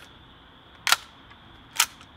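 Two sharp mechanical clicks, about a second apart, from a Tokyo Marui Desert Eagle .50 gas blowback airsoft pistol being handled.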